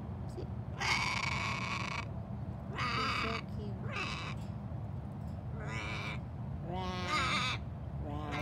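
A crow cawing in a series of about five harsh calls, roughly a second apart; the first is the longest. A steady low rumble runs underneath.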